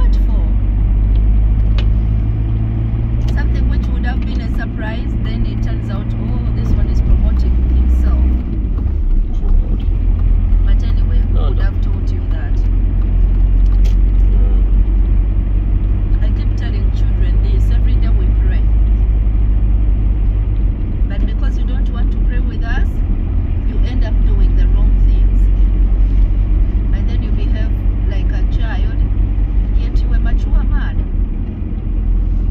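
Car cabin driving noise: a steady low rumble of engine and tyres on the road, which shifts in pitch about eight seconds in.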